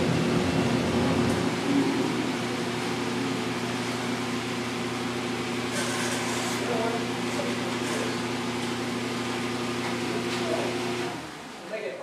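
Gas-fired crucible furnace for melting bronze running: a steady burner-and-blower noise with a low hum, which cuts off suddenly near the end as the furnace is shut down.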